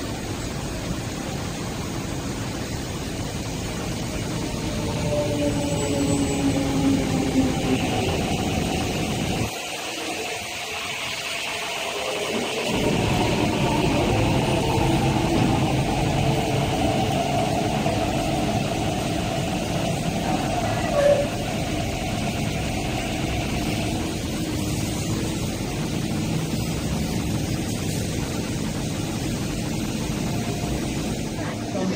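MTR East Rail Line R-train running alongside the platform: a steady rumble of wheels and running gear with faint electric motor hum. It grows louder about five seconds in, the low rumble drops away briefly around ten seconds, then it is louder again.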